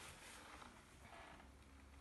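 Near silence, with faint soft rustling of potting soil handled by a plastic-gloved hand as it is pressed in around the plant's stems.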